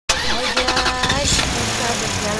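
An engine-starting sound: a quick run of chugging pulses for about the first second, then settling into a steadier running sound.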